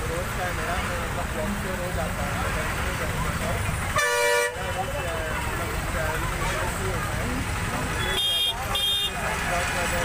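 Vehicle horns in road traffic: one honk lasting about half a second about four seconds in, then two short toots in quick succession near the end, over a steady background of traffic noise and people talking.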